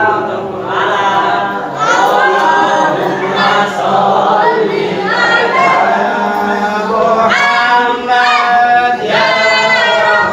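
A group of men's and boys' voices singing a devotional song together without instruments, after the tarawih prayer. The singing grows fuller and louder over the last few seconds.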